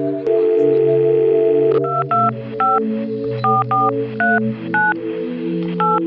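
Smartphone keypad touch-tones as a number is dialed: about eight short two-tone beeps at an uneven pace, starting about two seconds in. They sound over held chords of background music.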